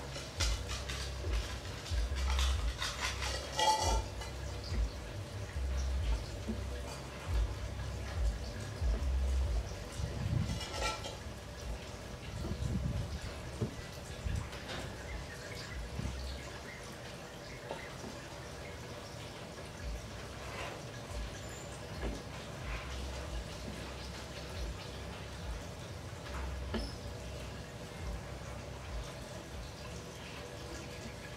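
Aquarium water bubbling and trickling from an air-bubble stream and a submersible filter, over a steady faint pump hum. Irregular low thumps come through mostly in the first half, with a sharp click at the very start.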